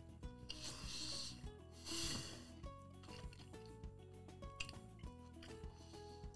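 Faint background music, with two short breathy hisses from a person exhaling through the mouth while eating hot sauce, about half a second in and again about two seconds in.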